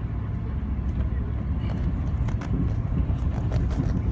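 Pickup truck driving slowly with a utility trailer in tow: a steady low engine and road rumble, with scattered light clicks and rattles.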